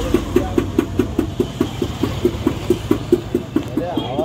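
TVS Ntorq 125 scooter's single-cylinder engine idling, its exhaust puffing in an even beat of about seven pulses a second through an aftermarket silencer being fitted.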